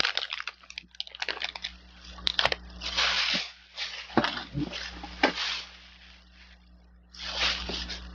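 Plastic shopping bag rustling and foil trading-card packs crinkling as they are handled: dense crackling at first, then several short bursts of rustle.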